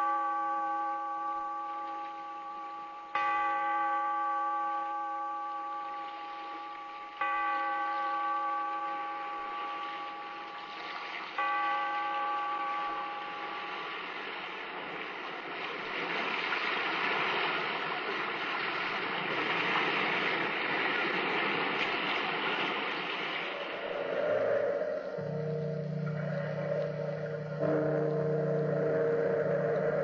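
A large bell tolling slowly, struck about every four seconds three times, each stroke ringing out and fading. Then the washing of surf swells up, and near the end sustained low musical chords come in.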